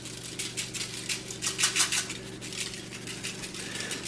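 Dry barbecue rub being shaken out over ribs on aluminium foil: a light, irregular rattling and pattering of grains, several ticks a second. A steady low hum runs underneath.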